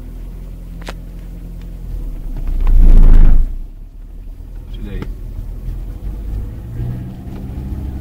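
Volkswagen car's engine running as the car pulls away slowly, heard from inside the cabin, with a loud rumbling swell lasting about a second around three seconds in.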